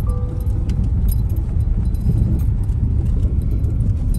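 Inside a moving car on a cobblestone road: a steady low rumble of tyres and road noise, with light scattered rattling clicks.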